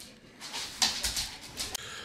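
Dogs playing on a wood floor: a few short scuffling, sniffing noises.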